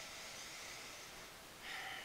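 A man breathing audibly: one long breath lasting over a second, then a shorter one near the end.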